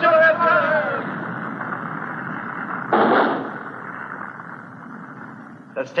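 Cartoon sound effect of an erupting volcano: a steady rumbling rush of noise with a sharp blast about three seconds in, which then dies away.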